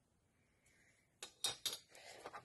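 Near silence for about a second, then a quick run of three or four sharp clicks and crackles as sheets of metallic foil paper and an aluminium ruler are handled and put down on the cutting mat.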